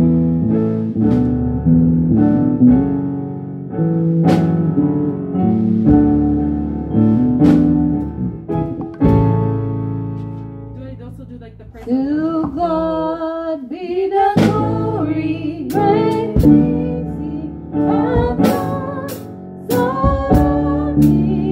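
Worship music played live on a five-string electric bass with keyboard chords, the bass moving under held chords. A voice sings with vibrato through the middle stretch.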